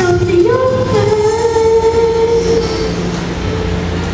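A child singing into a microphone over a backing track, stepping up in pitch about half a second in and then holding one long note until about three seconds in.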